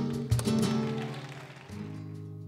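Two flamenco guitars playing an instrumental passage: a sharp strummed chord with a low knock about a third of a second in, the chord dying away, and a new chord coming in near the end.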